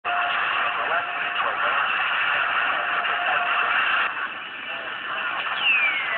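Galaxy CB radio speaker playing a received transmission: a voice under heavy static and hiss. Near the end a whistling tone starts and falls steadily in pitch.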